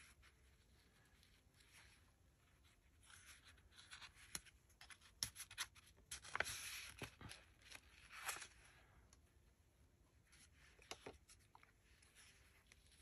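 Faint rustling and scraping of fabric and paper as fingers press and smooth a glued fabric piece down onto a paper journal cover, with a few light clicks and taps.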